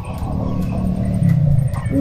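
A woman's low, distressed moan, as if holding back tears, over a low rumble.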